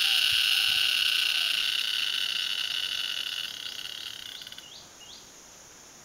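Tree cricket singing from a tree: a loud, steady, high-pitched trill with overtones that fades over a second or so and stops about three-quarters of the way through. A few short rising chirps follow.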